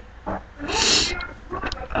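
A person's harsh, breathy vocal sound of exasperation, one burst about half a second long a little over half a second in.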